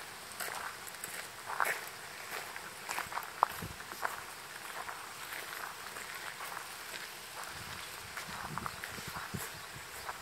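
Footsteps on a gravel path, irregular crunching steps over outdoor ambience, with a couple of sharper clicks about a second and a half and three and a half seconds in.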